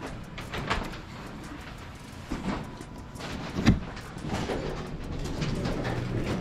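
Elevator arriving and its doors sliding open, amid scattered clicks and knocks, the loudest a sharp knock about three and a half seconds in.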